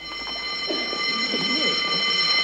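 A prison's electric alarm or buzzer sounding one steady, high ringing tone, with women's voices chattering faintly underneath from about a second in.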